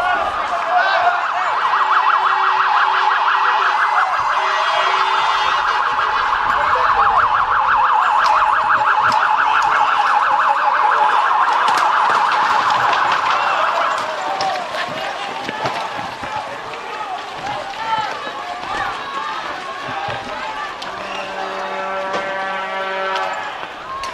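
Police car siren sounding in a fast warbling yelp, loud, for about thirteen seconds, then cutting off, leaving crowd noise with scattered shouts.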